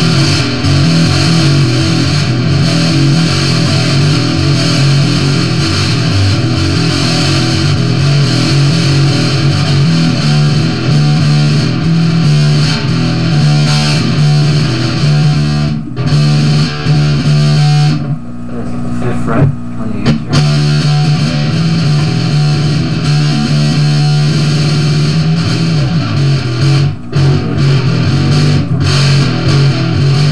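Electric bass guitar played fingerstyle, running through a heavy rock riff, with a couple of short breaks past the middle.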